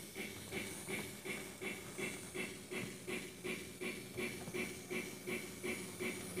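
Electronic steam-locomotive sound effect from an MRC Sound Station played through a small speaker: a steady, even chuffing with hiss, about three chuffs a second.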